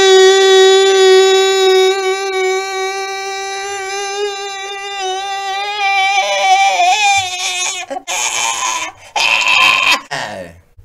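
A singing voice holding one long, steady note for about eight seconds, wavering slightly near the end: the held final note of a ballad. It is followed by two short bursts of noise.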